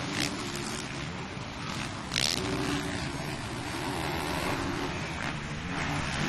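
Four-stroke 450cc motocross bikes racing over jumps, their engines revving up and down over a steady rushing background. There is a short sharp burst about two seconds in.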